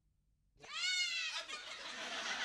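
Silence, then about half a second in a single high-pitched vocal cry that rises and falls in pitch, breaking into laughter near the end.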